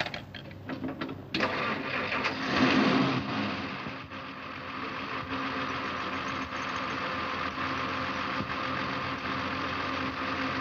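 Car engine catching after about a second of light clicking, revving briefly, then settling into a steady idle after being worked on under the hood.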